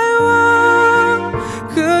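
Mandarin pop ballad: a male singer holds one long high note at the end of a lyric line over soft backing music. The note ends about a second and a half in, and the next sung line begins near the end.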